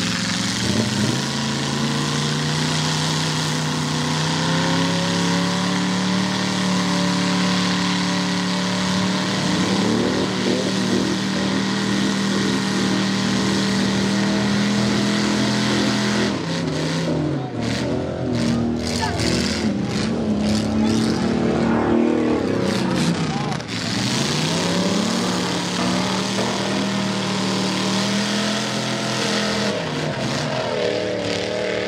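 Mud-bogging four-wheel-drive engines running hard at high revs while a vehicle churns through a mud pit. The engine note holds steady for a long stretch, then in the second half drops and climbs again several times as the throttle is let off and reapplied.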